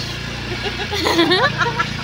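Motor scooter engine running steadily while riding, with a woman's voice heard briefly about a second in.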